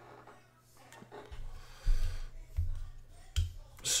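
Handling noise of a Brous Blades Division folding knife being picked up off a rubber mat and turned in the hand: light rubbing and three dull low thumps in the second half.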